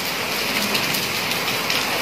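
Steady rain falling on a wet concrete courtyard and its puddles, an even hiss with no break.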